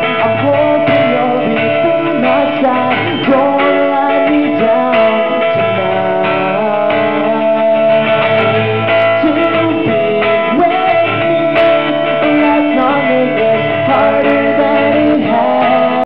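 Live acoustic song: an acoustic guitar strummed steadily under a male voice singing.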